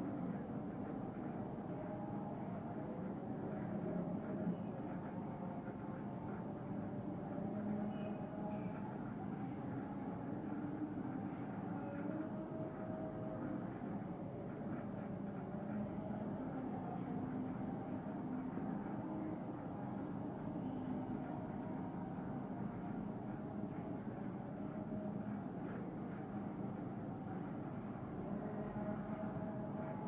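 Steady low background rumble with faint, shifting tones running under it and no distinct knocks or taps.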